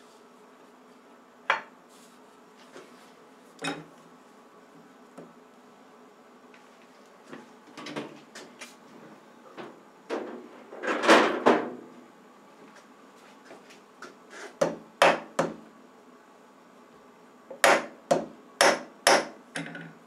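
Sharp metal knocks and taps on a milling-machine vise and metal workpiece as the stock is set against the stop block and clamped. They come scattered at first, with a louder, longer clatter about halfway, and end in a quick run of five knocks.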